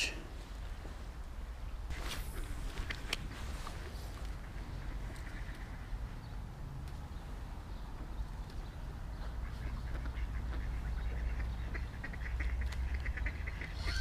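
Ducks quacking, over a steady low rumble.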